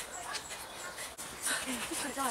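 Footsteps of hikers walking up a woodland dirt path, a few soft steps, with brief faint high vocal sounds in the second half.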